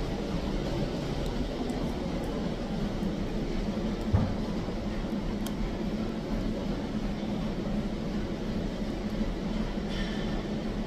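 Steady gym background noise: an even rumble with a low hum under it, and one short thump about four seconds in.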